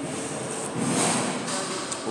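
Soup being slurped off a metal spoon: a noisy sip that swells about a second in.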